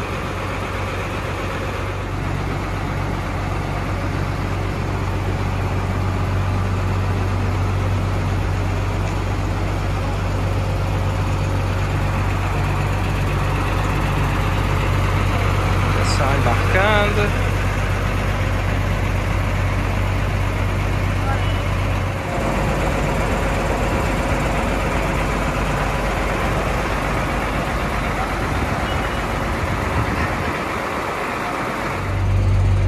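Diesel bus engine idling with a steady low drone that cuts off about two thirds of the way through, under background chatter of voices.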